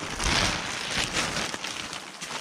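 Plastic tarp rustling and crinkling as it is pushed aside and brushed past, louder in the first half.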